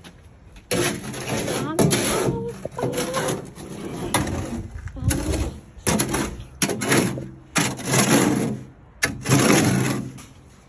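Shovel scraping and working wet cement in a steel wheelbarrow, a run of rough scraping strokes about once a second that starts about a second in.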